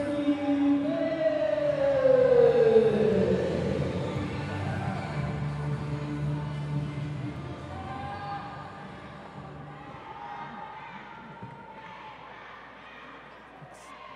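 A ring announcer's voice over the arena PA, calling out in long drawn-out syllables that slide down in pitch and echo through the hall, with music and crowd sound beneath. It dies down over the last few seconds.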